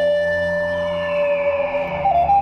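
Meditative music: a Native American-style flute holds one long steady note that fades near the end, over a low sustained drone, with a faint high falling glide in the second half.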